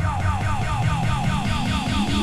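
Breakbeat DJ set music: a siren-like synth riff of short falling notes, about four a second, over heavy bass, with a rising sweep that begins about one and a half seconds in.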